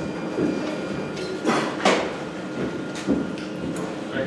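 Pub room background noise with two short hissing swishes, about one and a half and two seconds in.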